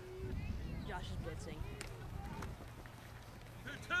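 Faint, distant voices of spectators and players calling out across an open field, with a low rumble on the microphone for the first couple of seconds.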